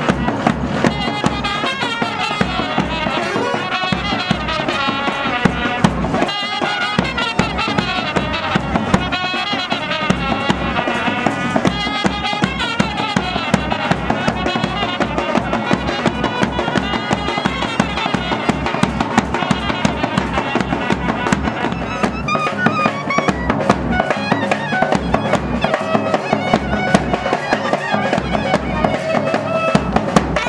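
Brass band of trumpets playing a lively tune over a steady drum beat.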